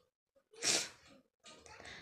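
A woman makes one short, sharp breathy sound about a second in, between pauses in her talk.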